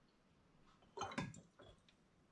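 Mostly quiet. About a second in there is a brief cluster of light knocks and liquid dribbling as the siphon tube is moved from one glass wine bottle to the next.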